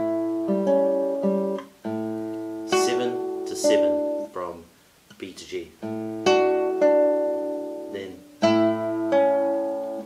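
Nylon-string classical guitar fingerpicked: a short melodic phrase of plucked notes ringing over held bass notes, played three times with brief pauses between.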